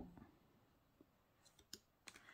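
Near silence, with a few faint clicks of oracle cards being moved through the deck about one and a half seconds in.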